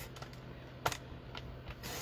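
A sheet of designer-series paper being slid and lined up on a paper trimmer, faint paper-handling clicks with one sharp click about halfway through.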